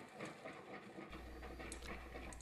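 Faint handling sounds over quiet room tone: a metal spoon scraping powder out of a glass bottle and stirring in a plastic bucket, as toning chemicals are measured and mixed.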